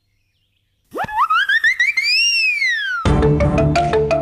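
A loud synthesized sound-effect glide whose pitch sweeps up and then back down over about two seconds. Background music with a steady beat follows it, coming in about three seconds in.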